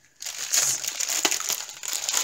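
Small plastic bags of diamond-painting drills crinkling and crackling as they are handled, starting after a brief pause, with many small sharp clicks throughout.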